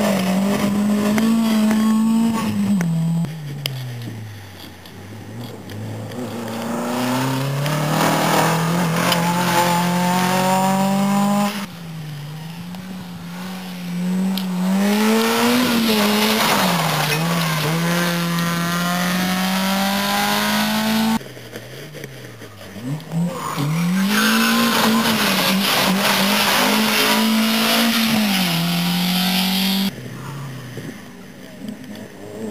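Rally car engines at full throttle on a gravel stage, one car after another, a VW Golf II first: each engine revs up and drops back with gear changes and lifts through the corner. The sound breaks off abruptly twice, about a third and two-thirds of the way through, as one car gives way to the next.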